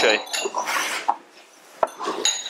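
Clatter and scraping of objects on a wooden table: a short rough scrape in the first second, then a lull and a single sharp click near the end.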